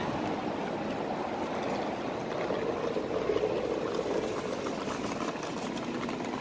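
Steady hum of city street traffic, swelling about halfway through as a vehicle goes by.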